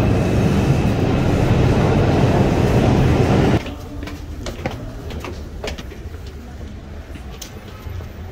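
New York subway train rumbling loudly and steadily in the station, cut off abruptly about three and a half seconds in; after that, quieter street noise with scattered sharp clicks.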